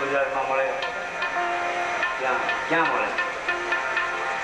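Live devotional bhajan music: a harmonium holds notes under a man's voice, with sharp hand-percussion strikes scattered through.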